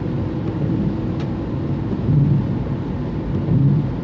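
Steady low rumble of a small van driving, heard from inside its cabin: engine and road noise.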